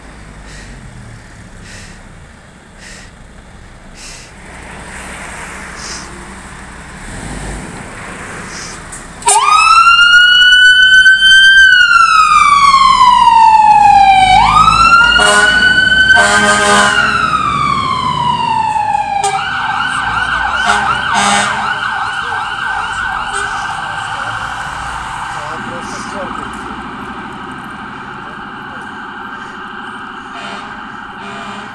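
A Scania P410 fire engine's emergency siren switches on about nine seconds in. It makes two slow rising-and-falling wails, then changes to a fast warble that slowly fades as the truck drives away.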